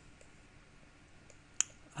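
A single sharp computer mouse click about one and a half seconds in, with a few faint ticks before it, over quiet room hiss.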